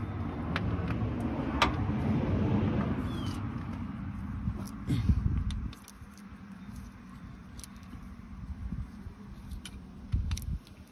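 Light clicks and taps of a brass air-hose fitting and hand tools being handled against a truck transmission, over a low rumble that swells in the first few seconds and drops away sharply about six seconds in.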